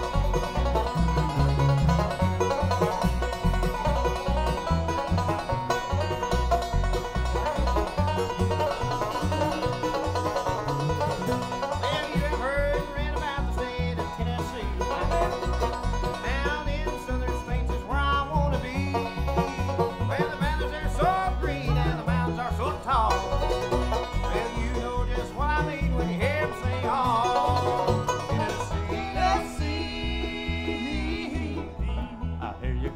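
Live acoustic bluegrass band playing a song in the instrumental opening: five-string banjo kicks off over upright bass, mandolin and acoustic guitar. Sliding melody lines join about twelve seconds in.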